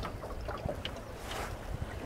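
Wind buffeting the microphone over choppy sea water, with a low rumble and a few small splashing clicks.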